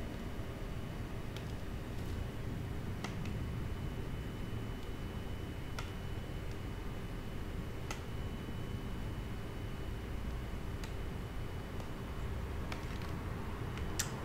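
Steady low room hum with a faint constant tone underneath, broken by a handful of light, scattered clicks.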